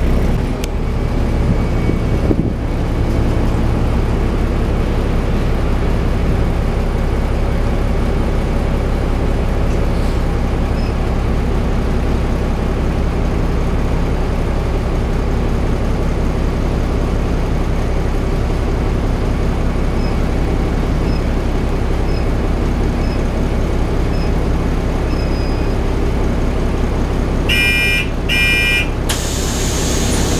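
Autosan Sancity 12LF city bus idling at a stop with its front doors open, a steady low engine hum heard from inside by the door. Near the end two short electronic door-warning beeps sound, and a hiss follows as the doors begin to close.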